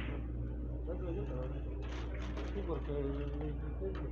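Low background voices in a billiards hall over a steady low hum, with a faint click or two.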